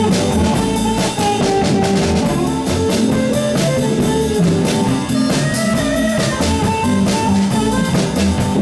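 Live blues band playing an instrumental passage: amplified harmonica played through a microphone, over electric guitar, keyboard and drum kit.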